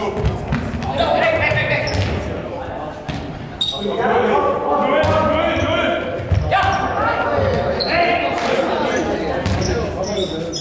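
Players' voices calling and shouting in a large, echoing sports hall, with several sharp thuds of a Faustball being struck by fists and arms and bouncing on the hall floor.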